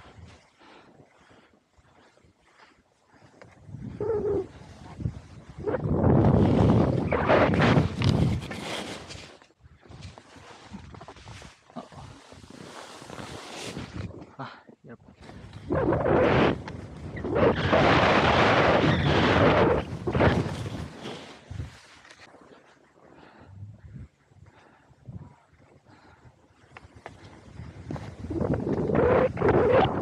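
Wind rushing over a camera microphone during a fast downhill run on snow. It comes in several loud gusts of a few seconds each, with quieter stretches between them.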